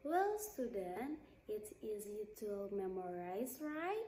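A woman speaking in a lively voice with pitch rising and falling.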